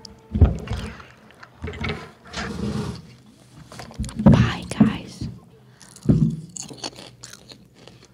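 Indistinct, unworded voices and bumps and rustles from people moving at a table of desk microphones, coming in several short separate bursts; the loudest is about four seconds in.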